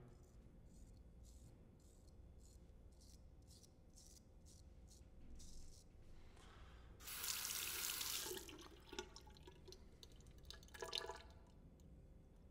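A Ralf Aust 5/8" carbon steel straight razor scraping through lather and stubble on the neck. It makes faint short strokes, then a longer, louder scrape about seven seconds in, and a few small scratchy sounds near the end.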